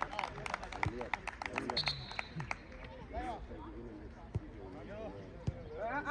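Hands clapping quickly and evenly, about five claps a second, in celebration of a goal, dying out after about two and a half seconds; men's voices call out across the pitch after that.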